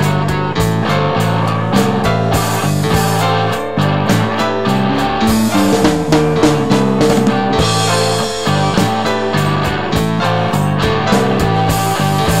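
Instrumental rock band playing: drum kit keeping a steady beat under electric guitars and bass guitar.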